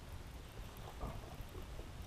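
Low, steady wind rumble on the microphone of a kayak-mounted camera, with faint outdoor noise above it and a brief faint sound about a second in.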